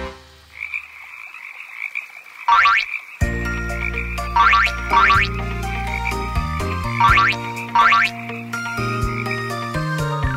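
Cartoon frog croak sound effects, five short rising croaks, over a children's song intro that starts about three seconds in. A soft fizzing bubble effect plays first.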